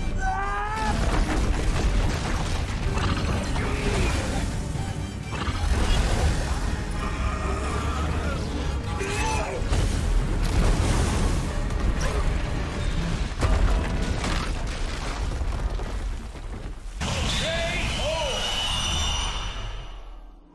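Film fight soundtrack: dramatic score mixed with deep rumbling booms and the crash and rush of churning water. Short pitched cries cut through near the start and again near the end.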